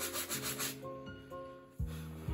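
Bristle shoe brush scrubbing back and forth over a black leather shoe in quick, rapid strokes, which stop a little under a second in. After that come a few sustained background music notes and one short low thump near the end.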